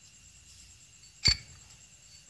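A single sharp metallic clink about a second in, with a brief ring, as the steel magneto flywheel is fitted onto the crankshaft of a KLX 150 engine.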